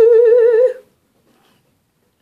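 A woman humming a single high 'mmm' note with a steady vibrato, which stops a little under a second in.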